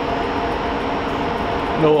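Cooling fans of a Lenovo System x3650 M2 rack server running steadily, an even rushing noise with a faint steady hum.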